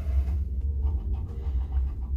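A copper penny scratching the coating off a scratch-off lottery ticket in quick, irregular strokes, over a steady low hum.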